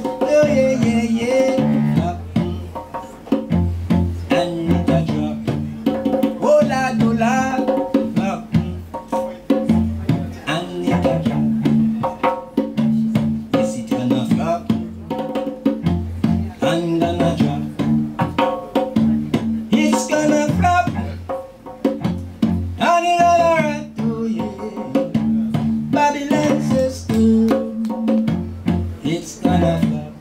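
Cello playing a melody over a Nyabinghi hand drum beating a steady rhythm.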